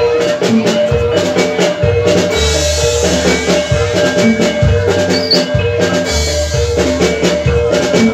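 Javanese gamelan accompaniment for jaran kepang dancing: metallophones repeating a steady figure of ringing notes over quick drum strokes and deep low booms.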